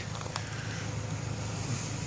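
Steady roadside background noise: a low hum under an even hiss, with one faint tick about a third of a second in.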